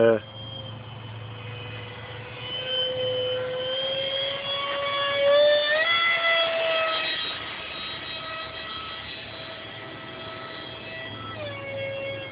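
Whine of a 50 mm electric ducted fan driving an RC Blue Angels model jet in flight: a steady high tone whose pitch climbs about six seconds in, when it is loudest, then drops back near the end.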